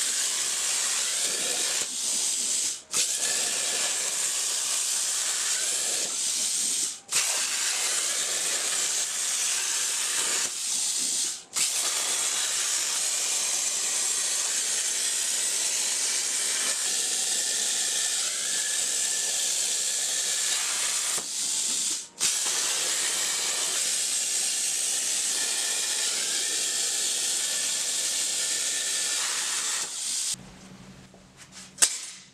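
CNC plasma cutter's torch arc cutting steel sheet: a steady, loud hiss. It breaks off for a moment four times, each time starting again with a brief louder burst.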